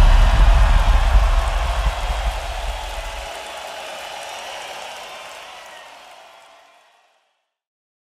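A deep rumble under a broad wash of noise, fading away after the end of heavy rock music: the low rumble stops about three seconds in, and the wash dies out to silence about seven seconds in.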